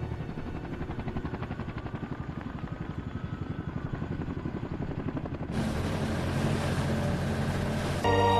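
Film sound effects: a rapid, even mechanical pulsing like a rotor, with a thin whine that slowly falls in pitch. About five and a half seconds in, a loud rushing noise cuts in suddenly and holds.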